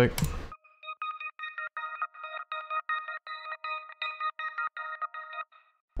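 A synth melody from an Analog Lab preset, pitched up an octave and run through an Output Portal granular preset, plays a simple repetitive pattern of short notes, about four a second. With its lows and highs EQ'd out it sounds thin and narrow. It starts just under a second in and stops shortly before the end.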